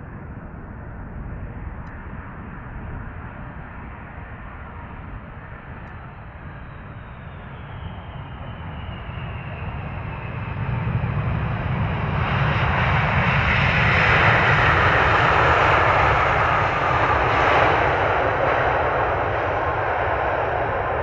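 Boeing 747-400 freighter's four jet engines on landing: a steady jet sound with a whine that slowly falls in pitch as the aircraft passes. Just past the middle, after touchdown, it swells into a much louder rush that holds to the end, typical of reverse thrust during the rollout.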